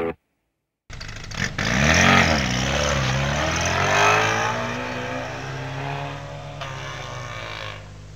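A car engine revving up and down, then running on more evenly as it fades away.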